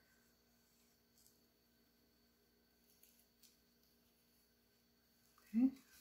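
Near silence: room tone with a faint steady hum and a few faint soft ticks.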